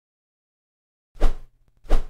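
Two short pop sound effects about two-thirds of a second apart, starting about a second in, after a stretch of dead silence: a slide-transition effect.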